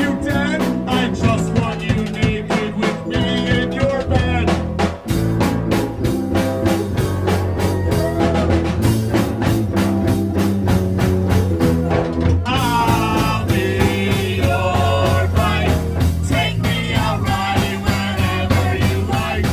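Live rock band playing with a steady drum beat, bass and electric guitar, with a brief break about five seconds in.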